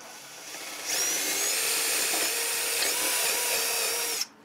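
Power drill with a quarter-inch bit boring a pilot hole through a wooden rocker into the chair leg for a locking pin. The motor starts about a second in and runs steadily with a high whine.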